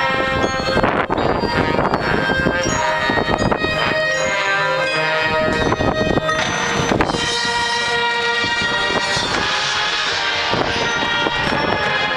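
High school marching band playing, brass and woodwinds holding sustained chords, with a few sharp percussive accents.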